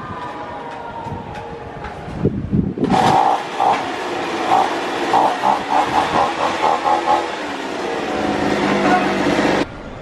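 Petrol leaf blower starting up about three seconds in and then running loudly, its engine note pulsing up and down as it is revved, before stopping abruptly near the end.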